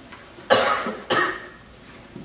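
Two coughs about half a second apart, each starting suddenly and fading quickly.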